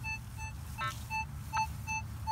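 Minelab CTX 3030 metal detector giving a string of short, clear beeps, about two to three a second, as its coil is swept back and forth over a buried target. The signal is iffy from one sweep direction and solid from the other.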